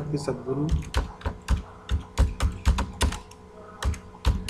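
Typing on a computer keyboard: a quick, irregular run of keystrokes that pauses briefly near the end.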